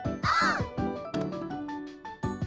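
A short cartoon-style crow caw sound effect near the start, followed by light background music of short plucked notes.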